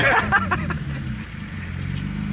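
Car engine idling steadily, with an even low hum.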